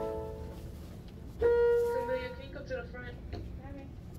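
Music: a loud tune fades out over the first second. About one and a half seconds in, quieter music begins with a held note, then a wavering melody that runs until near the end.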